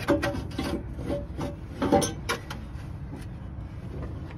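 Irregular clicks, knocks and scraping of metal parts being handled during exhaust manifold work, about ten in all, with the loudest knock about two seconds in.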